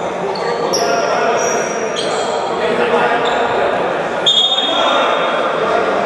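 Echoing gym-hall ambience: indistinct voices and a basketball bouncing on the wooden court, with several short high squeaks, one a little louder about four seconds in.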